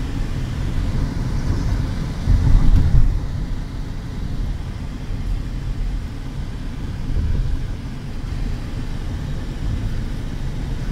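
Low, steady rumble of a car driving at highway speed, heard from inside the cabin. It swells louder for about a second, two to three seconds in.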